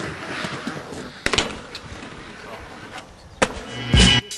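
A few sharp knocks and scuffs over faint outdoor background noise, with one about a second and a half in and another near the end.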